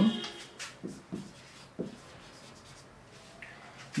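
Marker pen writing on a whiteboard: a few short strokes in the first two seconds.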